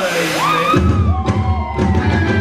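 A performer's voice sliding down and then up in pitch, then a live rock band kicking in about a second in, with heavy bass and electric guitar.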